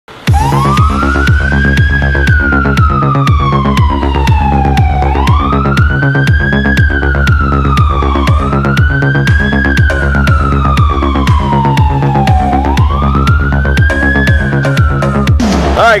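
Fire truck siren wailing: four cycles, each rising quickly and then falling slowly in pitch. Under it runs music with a steady beat.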